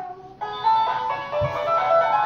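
A Hatchimal toy inside its egg playing a short electronic tune of held notes, starting about half a second in.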